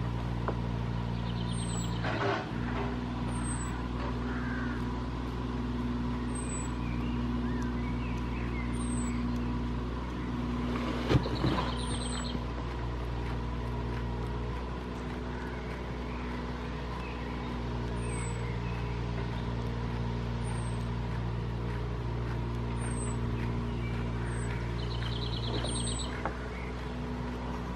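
A steady low motor drone holding a constant pitch throughout, with faint short high chirps recurring every second or two and a brief louder noise about eleven seconds in.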